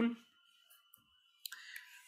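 A few sharp clicks about a second and a half in, from a computer input device selecting writing on a digital whiteboard to erase it, followed by a faint steady hum.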